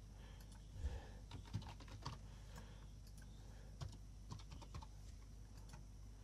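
Computer keyboard typing: faint, irregular keystrokes.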